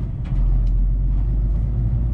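Heavy truck driving, heard from inside the cab: a steady low diesel engine drone with road noise, the deep rumble growing stronger a moment in.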